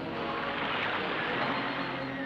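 Cartoon sound effect: a steady rushing hiss that swells about a second in, accompanying the raft being heaved upward.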